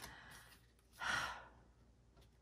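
A woman's breathy sigh about a second in, after a fainter breath at the start.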